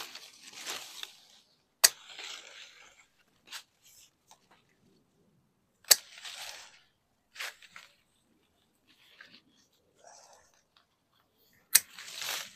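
Hand pruners snipping through avocado branches: sharp snips every few seconds, each followed by the rustle of the leafy cut branches.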